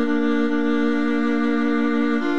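Orchestral strings from the Garritan sampled-orchestra library hold two sustained notes together, unbroken and steady, in a slow instrumental piece.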